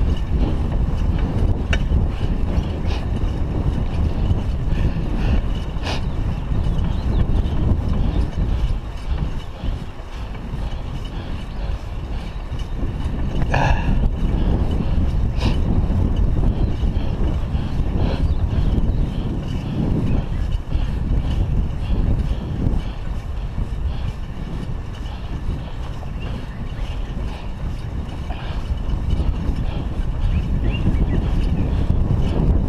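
Wind rushing over the microphone of a GoPro Hero 3 on a moving bicycle, a steady low rumble, with a few brief higher clicks now and then.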